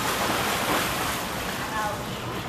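A steady rushing noise, easing slightly towards the end, with a short voice near the end.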